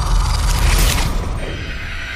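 Dramatic sound-effect sting from a TV serial's background score: a deep boom with a rasping, mechanical-sounding whoosh about half a second in, dying down in the second half.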